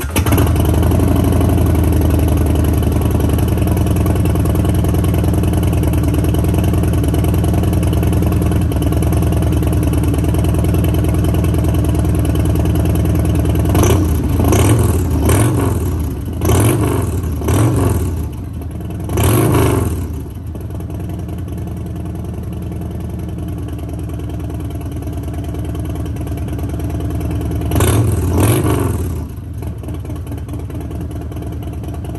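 Harley-Davidson Milwaukee-Eight 107 V-twin on a cold start, running through a Bassani Road Rage 2-into-1 short megaphone whose baffle has had its fibreglass wrap removed. It catches right at the start and idles steadily. About halfway through, five quick throttle blips follow one another, then the idle settles lower, with two more blips near the end.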